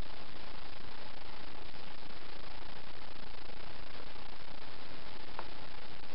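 Steady hiss of recording background noise with no distinct sound in it, and one faint tick about five seconds in.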